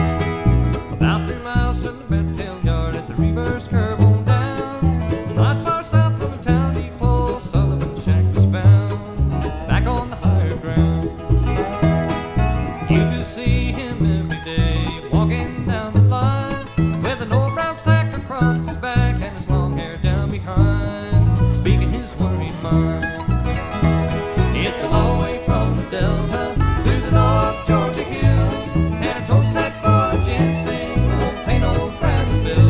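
Bluegrass tune in E: an upright bass plucked on a steady beat, under guitar and banjo picking the melody.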